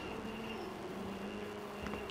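A low, steady machine hum of room tone, with a faint click near the end.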